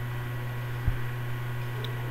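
Steady low electrical hum with faint hiss, the recording's background noise in a pause between words, with one soft thump a little under a second in.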